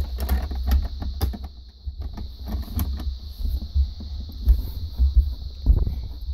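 Plastic Lego pieces clicking and rattling as hands handle a built model, lifting a hinged panel and fitting pieces into place, with many short clicks over a low rumble of handling noise.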